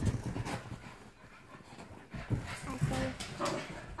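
Small dogs scuffling in play on a couch, panting, with scattered soft thumps and rustles as they move.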